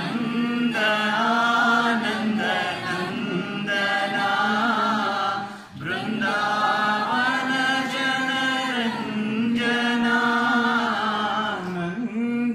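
A small group of men and women chanting a Hindu devotional hymn in unison, in long held notes, with a brief pause for breath about halfway through.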